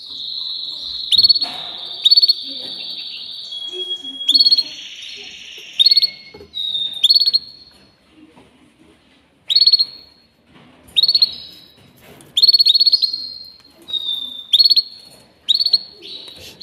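Canary singing: short phrases of fast trilled notes and held whistles, repeated one after another, with a brief lull about eight seconds in.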